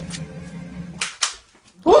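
A dog barking twice, two short sharp barks about a second in.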